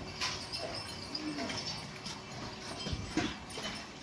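A short, faint animal call about a second in, rising then falling in pitch, over low background noise with a few soft knocks.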